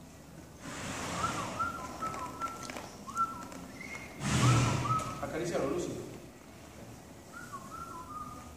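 Soft whistled notes: several short steady tones, each with a quick upward slide at the start. They come in two runs, with a few more near the end. Two breathy rushes of noise come with them, about a second in and again around four and a half seconds, the second being the loudest moment.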